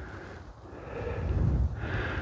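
Low wind rumble on the microphone, with a person's breath close to the mic swelling about a second in.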